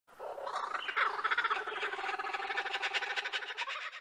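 Animal calling in a rapid, steadily pulsing trill, dense and continuous, that cuts off suddenly near the end.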